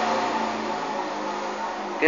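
A steady mechanical hum with a low, even drone and background hiss, slowly getting quieter.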